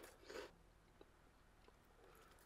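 Near silence, with a faint crunch of someone chewing a crunchy corn-fry snack in the first half-second.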